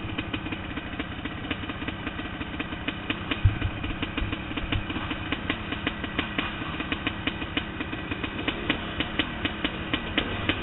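Dirt bike engines idling, with a steady stream of ticks from their firing. A couple of dull low thumps come about three and a half seconds in.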